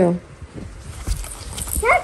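A woman's voice speaking briefly at the start and again near the end, with quiet room sound between.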